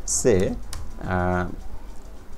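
A single computer keyboard key press, one sharp click about two-thirds of a second in, deleting selected text in a code editor. A man speaks around it.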